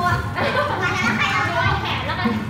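Young children's voices chattering over one another, several girls talking at once.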